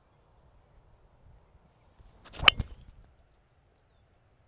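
Golf driver swung at a teed-up ball: a brief swish of the club, then one sharp crack as the clubhead strikes the ball about two and a half seconds in.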